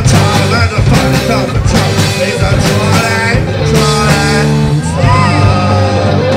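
Live rock band playing loudly: electric guitar, bass guitar and drums, with a man's voice singing over it in places.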